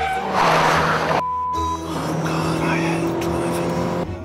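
Kia Cee'd hatchback driven hard round a test track: a loud burst of tyre and engine noise in the first second, cut off abruptly, then the engine held at steady, slightly rising revs. Background music plays underneath.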